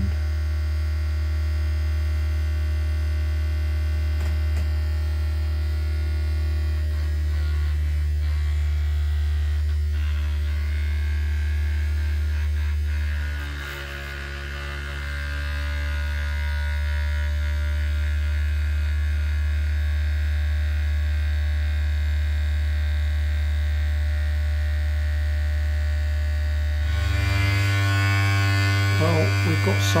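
Small battery-powered DC motor of a toy flapper paddle boat running steadily, a low hum as it turns the paddle crank, sagging briefly about halfway through. Near the end it runs louder and buzzier on a lithium-ion cell, which makes it noisier.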